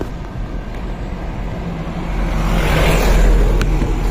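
A truck passing on the road close by, its engine rumble and tyre noise swelling to a peak about three seconds in and then easing off.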